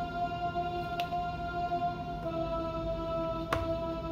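Solina string-ensemble plug-in on an Akai MPC One playing a sustained synth-strings chord. The chord shifts to new notes a little over two seconds in. Two short sharp clicks come through, about one second in and again near the end.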